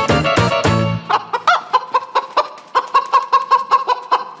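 Upbeat dance music with a heavy bass stops abruptly about a second in, leaving a run of short chicken clucks, several a second, as part of the performance soundtrack.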